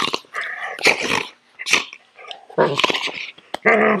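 Black poodle growling and snarling in a series of short bursts while its coat is being combed, a sign that it objects to the grooming.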